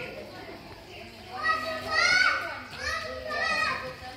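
Children's voices, with one child calling out loudly in a high voice twice, about a second and a half in and again near the end, over faint background chatter.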